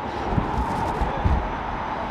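Street noise: steady traffic hum, with two brief low thumps, one about half a second in and one just over a second in.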